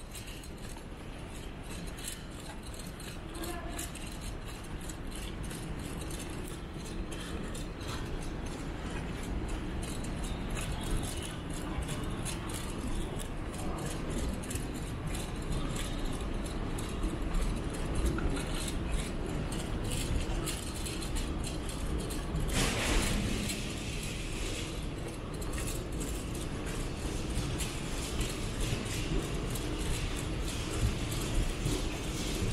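Steady low rumble of a large, empty terminal hall, with light clicks and rattles throughout from someone walking with the camera. A short, louder rush of noise comes about three-quarters of the way through.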